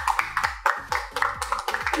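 A small group of people clapping over background music with a steady drum beat.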